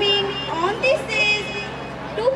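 A girl's voice speaking into a microphone, carried over a public-address system.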